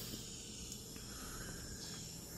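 Faint, steady chirring of a rainforest insect chorus from a field recording played through a small speaker.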